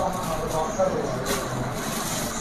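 Plastic-wrapped clothing packets rustling and crinkling as they are picked up and handled, with faint voices in the background.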